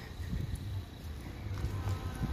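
Footsteps of a person walking on grass, heard as soft, irregular low thumps over a low rumble on the handheld phone's microphone.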